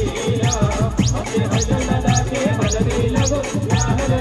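Live band music: a wavering keyboard melody over a heavy electronic drum beat, with a high-pitched falling sweep effect repeating about twice a second.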